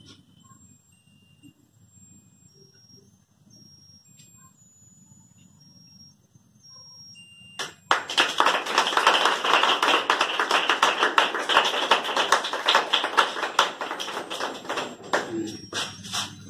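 A musical lotus-flower birthday candle plays a faint electronic melody of thin beeping tones. About eight seconds in, a group starts applauding loudly and keeps clapping for about eight seconds before it dies down.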